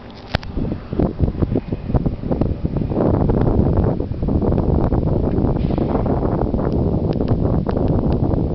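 Wind buffeting the camera microphone as a low rumble that grows loud and steady about three seconds in, with a run of short knocks in the first few seconds.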